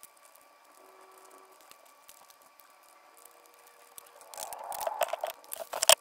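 Faint room tone with a few soft clicks, then from about four seconds in a louder run of irregular clicks and rustles from food being handled while eating.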